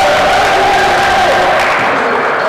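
People shouting long, drawn-out calls during a basketball game. One call falls in pitch partway through.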